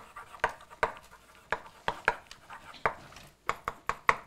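Chalk writing on a blackboard: a string of sharp, irregular taps and short scratches, about three a second, as a word is written out stroke by stroke.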